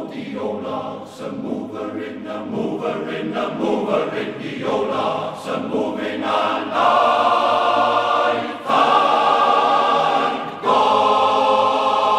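Male voice choir singing the closing bars of a spiritual: quick rhythmic repeated syllables, then, from about seven seconds in, three long held chords, the last one running on past the end.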